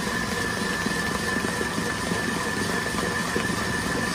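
Electric stand mixer running steadily with a whisk beating whole eggs and sugar into a foam that has reached full volume, its motor giving an even hum with a thin steady whine.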